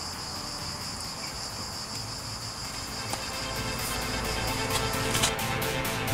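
Crickets trilling steadily at a high pitch. Past the middle, background music with a steady beat fades in and takes over.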